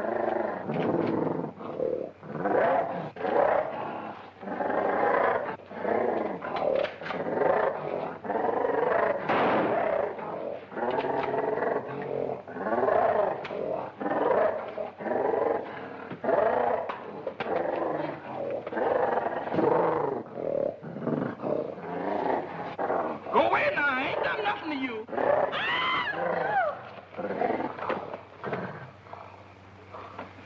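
A film gorilla roaring and growling over and over in short loud bursts during a fight, with a higher, rising and falling cry about three quarters of the way through.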